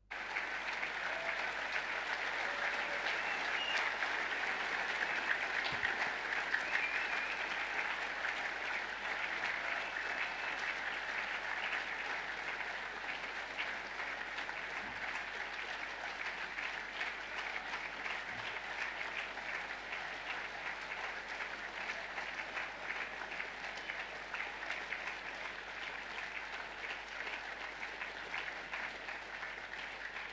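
Audience applauding: many people clapping together, starting all at once, loudest in the first several seconds and then slowly easing off.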